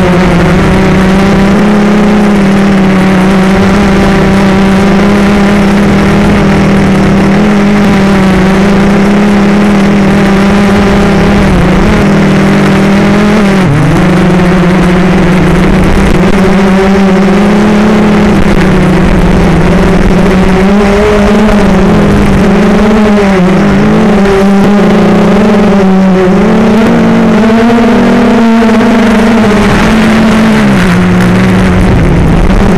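FPV drone's electric motors and propellers whining steadily at close range, as picked up by the onboard camera. The pitch dips sharply once about 14 seconds in, then wavers up and down through the last ten seconds.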